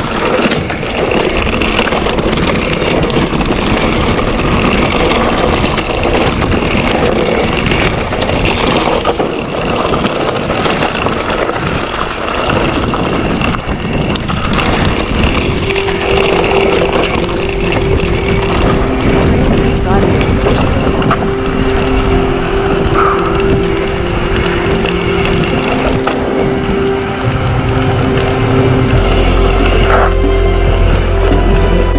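Mountain bike rolling fast over a rough dirt trail, heard through the action camera's microphone: steady wind rush and the rattle of the bike over bumps. About halfway through a steady humming tone joins in, and a deep bass comes in just before the end.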